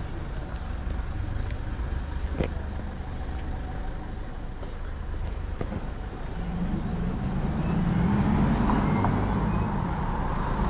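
Road traffic: car engines running by on the street. From about six seconds in, one vehicle's engine grows louder as it passes close by.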